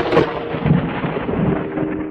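Sound effect of an animated logo intro: a loud, thunder-like noisy rumble slowly dying away, over a faint held synth tone.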